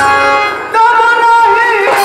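Live Bhojpuri folk music from a stage play. The drumming drops away, then a singer holds one long note that bends at its end.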